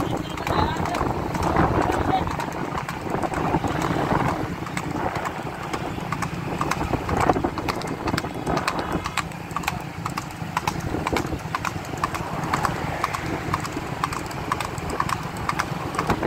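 A horse's hooves clip-clopping quickly and steadily on an asphalt road as it pulls a wooden cart at racing speed.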